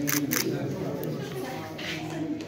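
Two quick camera-shutter clicks right at the start, about a quarter second apart, over background voices in a room.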